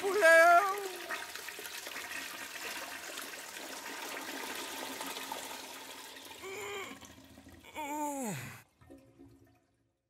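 Toilet flushing: water rushing for about five seconds and fading, after a brief pitched sound at the start. Near the end comes a short sound sliding down in pitch, then it cuts to silence.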